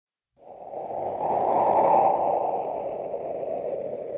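A rushing, whooshing sound effect from an old radio show opening. It fades in about a third of a second in, swells to its loudest near two seconds, then holds steady.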